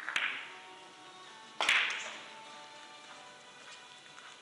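A three-cushion billiards shot: the cue tip strikes the cue ball just after the start, and about a second and a half later comes the loudest sharp clack as the ivory-like resin balls collide, followed by fainter ticks. Faint background music plays underneath.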